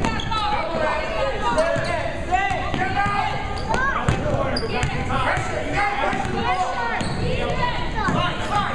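A basketball being dribbled on a hardwood gym floor during play, with many short, high sneaker squeaks from players moving on the court, in a reverberant gym.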